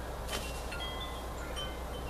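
Light chiming: short, high ringing tones at different pitches sounding at scattered moments, over a steady low hum.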